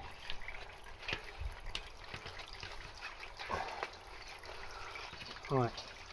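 Faint rubbing and a few light clicks as a bicycle tyre and inner tube are worked by hand onto the wheel rim.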